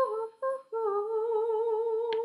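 A young woman singing unaccompanied: two short notes, then a long held note with a slow, wavering vibrato.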